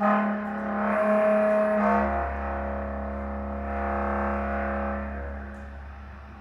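Bass clarinet and electric bass improvising together. A held, overtone-rich note starts suddenly, and a low sustained bass note comes in underneath about two seconds in. Both fade away near the end.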